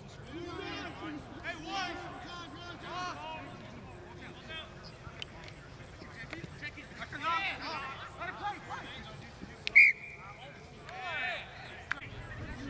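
Rugby players' shouts and calls across the pitch, then a single short blast of the referee's whistle about ten seconds in.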